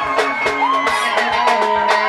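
Live mugithi band music: electric guitar lines over a fast, steady drum beat of about four hits a second.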